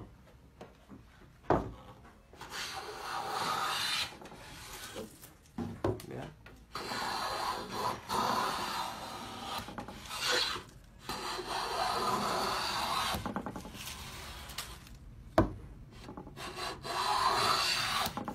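A hand plane with a freshly sharpened blade shaving a pine board along the grain, cutting thin shavings. It goes in about six strokes of a second or two each, with pauses between them and a sharp knock now and then.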